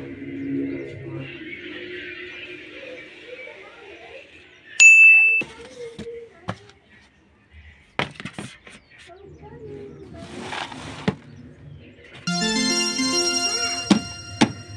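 Sung background music fades out, then a single loud, ringing ding. A few sharp knocks and a short rustling follow as kitchen scraps and crushed eggshells are handled at a metal compost bin. Music with a clear melody starts again near the end.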